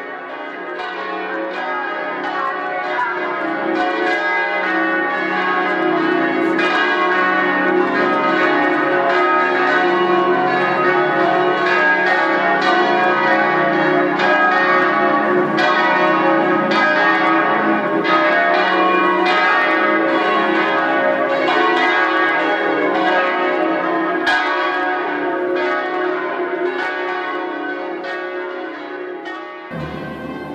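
Several church bells pealing together, struck rapidly so their tones overlap in a continuous festive ringing. The ringing grows louder over the first several seconds and fades out near the end.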